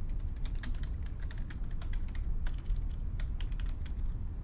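Typing on a computer keyboard: a quick, irregular run of key clicks as a short phrase is typed.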